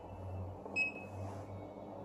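Balaji BBP billing machine's keypad giving one short, high beep about a second in as a number key is pressed, over a low steady hum.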